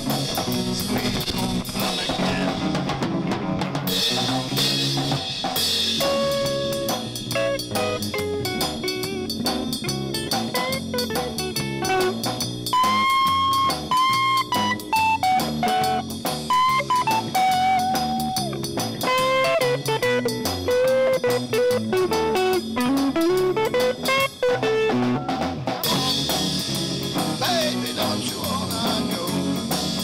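Live band of electric guitar, acoustic guitar and drum kit playing a tune. A single-note lead melody with bent notes comes in about six seconds in and runs to near the end, over steady drums, with cymbals louder near the start and the end.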